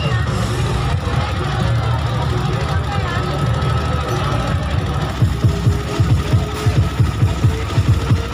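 Loud bass-heavy music from a van-mounted parade sound system. About five seconds in it settles into a fast, pulsing bass beat.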